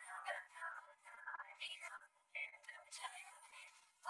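A girl's voice over a podium microphone, faint and tinny with no low end, in short phrases with brief pauses.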